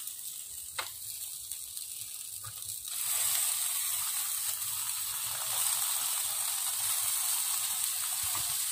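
Marinated meat sizzling on an electric grill, with a small click early on. The sizzle turns louder about three seconds in and holds steady while sauce is brushed onto the meat.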